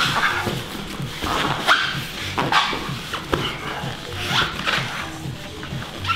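Short, strained grunts and hard breaths from two men wrestling on gym mats, coming about once or twice a second.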